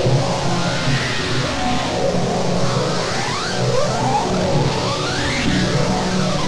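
Distorted synthesizer from LMMS's TripleOscillator 'Erazzor' preset, played from a keyboard: a dense, harsh sustained texture with pitch sweeping up and down, most clearly in the second half.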